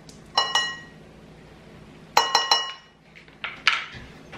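Glass jars clinking as they are handled on a stone countertop: one ringing clink about half a second in, two more in quick succession a little after two seconds, then a few lighter clicks near the end.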